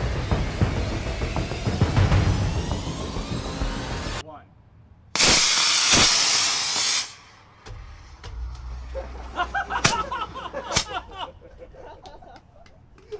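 Music with heavy low drums for about four seconds, cutting off abruptly. About a second later a spark-spraying firework fountain on the robot's back gives a loud, hard hiss for about two seconds, followed by scattered sharp crackles and clicks.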